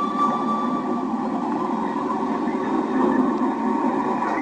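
Film soundtrack: a held orchestral chord fading out in the first second, giving way to a steady, dense rumbling noise.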